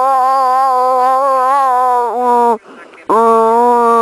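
A voice holding a long, loud, wavering "oh" note, breaking off about two and a half seconds in and starting a second long held note about three seconds in.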